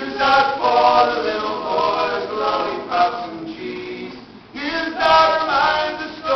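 Several voices singing a folk song together in harmony, with little or no instrument heard; the singing dips briefly about four and a half seconds in, then picks up again.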